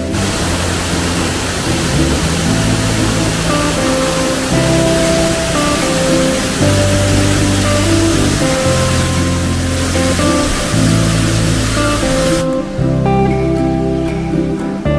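Background music over the steady rush of a waterfall pouring over rock. The water noise cuts off suddenly about twelve seconds in, leaving only the music.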